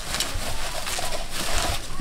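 Bubble wrap crinkling and crackling as it is pulled and unwrapped from around an enamel mug.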